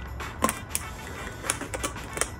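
Thin plastic water bottle clicking and crackling as a razor blade cuts into it: a few sharp, irregular clicks, the loudest about half a second in.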